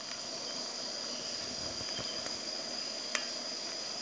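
Insects trilling steadily in the background as a constant high-pitched tone, with one faint click about three seconds in.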